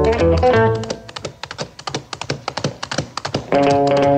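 Instrumental music with plucked guitar and bass. About a second in the melody and bass drop away, leaving sparse light tapping percussion, and the full band comes back in just before the end.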